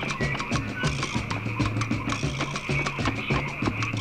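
Film score music with a steady, fast percussion beat over a repeating bass line.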